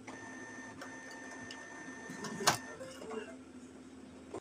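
Brother inkjet printer running with a steady hum and a high whine while an ink cartridge is pushed back into its bay, with a sharp click about two and a half seconds in as the cartridge snaps into place.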